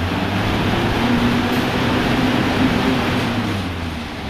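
Assault bike's fan flywheel whooshing steadily as the bike is pedalled and pushed hard in a sprint, with a low drone underneath; it starts to wind down near the end.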